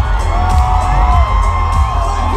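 A metalcore band playing live through a venue PA, with heavy bass and drums and long held notes that bend in pitch above them. Audience whoops and cheers sound over the music.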